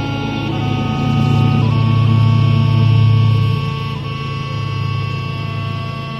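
Scottish smallpipes playing a tune: the drones hold a steady low chord under the chanter's melody of long held notes, which steps to a new note a few times.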